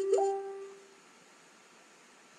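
A single short musical note, plucked or chimed, struck right at the start and dying away within about a second, with a brief higher note rising over it.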